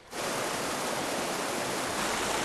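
White-water river rapids rushing over rocks, a loud steady wash of water that cuts in suddenly at the start.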